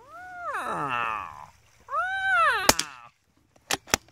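A cat meowing twice, two long calls that rise and then fall in pitch, with one sharp click near the end of the second call.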